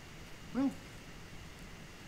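Quiet room tone with a faint steady hum, broken once about half a second in by a single short spoken word from a man.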